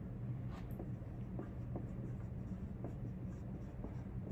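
Dry-erase marker squeaking and scratching across a whiteboard as words are written, in many short, faint strokes over a steady low room hum.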